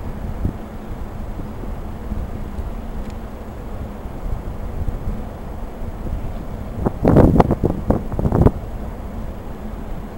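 Strong wind buffeting the microphone with a steady low rumble, as a dust storm blows across the yard. A louder burst of noise comes about seven seconds in and lasts about a second and a half.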